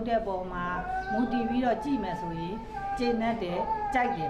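A woman speaking in Burmese, over background music with long held notes.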